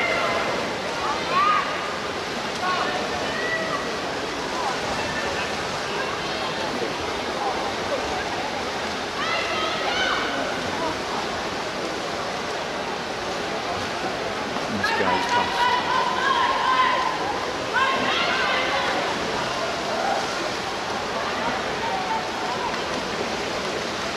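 Swimmers splashing through a race in an indoor pool, a steady wash of water noise, with spectators' shouts rising above it several times.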